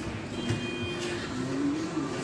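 Indistinct background voices and music, with a brief high-pitched steady tone lasting about half a second, starting about half a second in.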